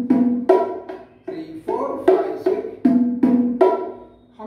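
Pair of bongos played by hand: a repeating beat of sharp, ringing strokes alternating between the high and the low drum, the pattern coming round about every two seconds.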